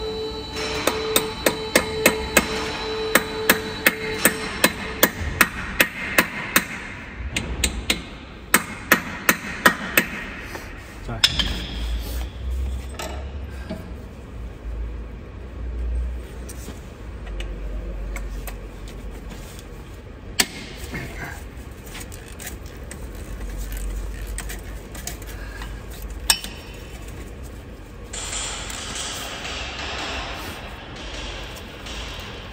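Steel hammer striking the disc brake caliper of a Mercedes Actros truck's rear axle during a brake pad change. It lands a quick run of about twenty sharp blows, roughly two a second, for the first ten seconds, then only a few single knocks.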